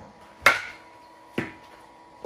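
Easton ADV 360 two-piece composite USSSA bat striking a baseball: a sharp crack about half a second in with a short ring after it, then a second, quieter knock about a second later.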